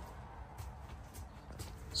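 Faint footsteps on a travel trailer's floor: a few soft, irregular knocks over low room tone.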